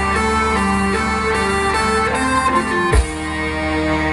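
Live band playing an instrumental passage: a sustained keyboard melody moving from note to note over a steady bass, with one sharp hit about three seconds in.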